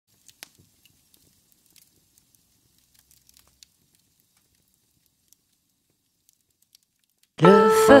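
Faint, sparse crackles and pops of a fire, a few every second. Just before the end, a keyboard chord and a woman's singing voice come in much louder.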